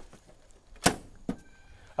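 A single sharp knock a little under a second in, then a fainter click about half a second later.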